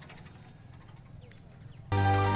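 Faint outdoor village ambience with a few short bird chirps. Music starts suddenly near the end.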